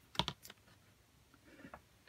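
A few quick light clicks and taps in the first half second as a shaped vinyl picture disc is flipped over by hand, then faint room tone.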